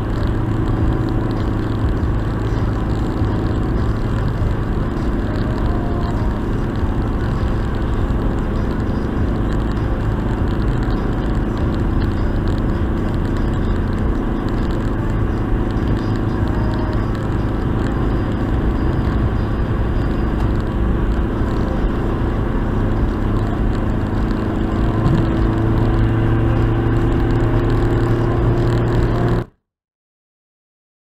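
Inside a car cruising at expressway speed: a steady drone of engine and tyre noise on the road. The low hum of the engine grows weaker through the middle and stronger again near the end, and the sound cuts off suddenly just before the end.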